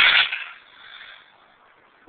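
Homemade potassium nitrate (KNO3) rocket motor with iron oxide in the fuel, its exhaust hiss cutting off about a quarter second in as the short burn ends, then a faint hiss fading out.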